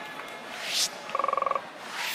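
Electronic broadcast transition sound effect: a whoosh that swells and cuts off, then a short buzzing tone that pulses rapidly for about half a second.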